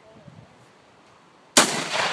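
A single blast from a Benelli Super Vinci 12-gauge semi-automatic shotgun firing a 3.5-inch BB shotshell, about one and a half seconds in, sudden and loud, followed by a long fading echo.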